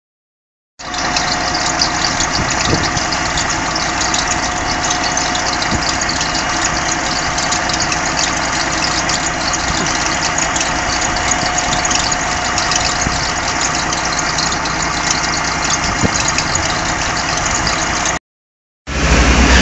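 A double-decker bus's rear-mounted diesel engine idling steadily.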